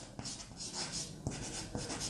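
Chalk writing on a blackboard: faint, short scratching strokes.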